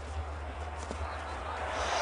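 Outdoor soccer-field ambience from the camera microphone: a steady low hum and hiss, with a few faint soft knocks from the play.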